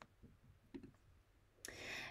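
Near silence between narrated sentences, with a couple of faint small clicks in the first second and a breath drawn in near the end.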